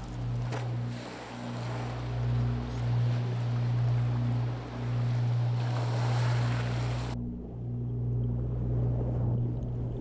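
A boat's engine running with a steady low hum, over the wash and splash of sea water; the water hiss drops away about seven seconds in while the hum carries on.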